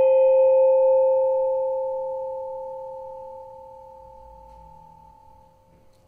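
Small Dream tuned M-Bao gong pitched at C5, ringing on after a single mallet stroke with one clear, steady pitch. Its few higher overtones die within a second or two, and the tone fades away slowly over about six seconds.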